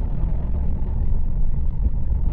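Low, steady rumble of wind and road noise from a motorcycle riding at highway speed.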